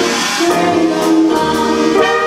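Small traditional jazz band playing live: a female vocal over tenor saxophone, trumpet and trombone, with piano, string bass and drums. A cymbal wash opens the moment and fades within about half a second.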